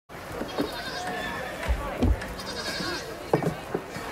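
Farm animals bleating a few times over a busy farmyard background, with a couple of short low thumps in the middle.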